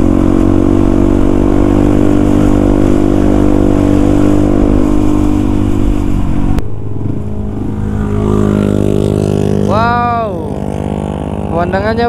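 Yamaha WR155R's single-cylinder four-stroke engine running steadily on the move, with wind on the microphone. Then there is a sudden cut about six and a half seconds in, after which the engine idles more quietly, with a brief voice sound near ten seconds and talk starting at the very end.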